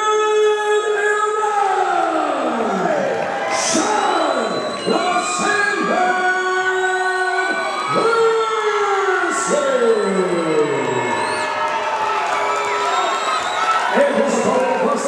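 A ring announcer's voice over a hall PA, calling out a fighter's name in long, drawn-out syllables. Each syllable is held, then slides down in pitch. A crowd cheers and whoops underneath.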